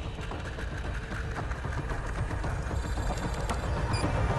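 Steady low rumble with an even hiss and faint crackle: a film soundtrack's ambient drone.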